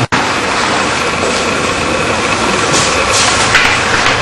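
Steady, loud room noise from an office signing table, with two short rustles of paper near the end as the signed documents are handled.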